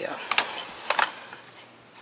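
LEGO plastic bricks clicking and knocking together as the model is handled: a few sharp clicks, two near the start and two more about half a second later.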